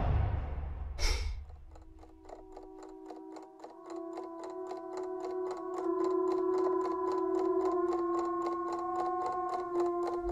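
Film trailer soundtrack: a swish and a hit about a second in, then steady clock-like ticking, about four ticks a second, under held sustained tones that swell in and grow louder over the next few seconds.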